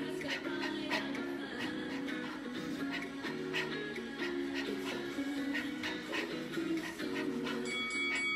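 Background music with a steady beat, about two beats a second, over sustained chords that change every second or so.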